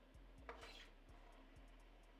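Faint clicks and a brief swish as aluminum fidget spinners are set down and flicked into spinning on a tabletop, very quiet overall.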